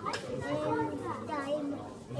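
Children's voices talking and calling out.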